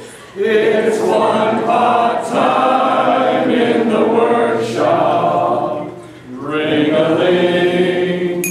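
Four men singing together, a verse of a chemistry song, in two long phrases with a short break about six seconds in.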